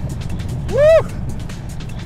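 Ford Focus RS's turbocharged four-cylinder engine running hard under background music. A short rising-and-falling vocal whoop comes about three quarters of a second in.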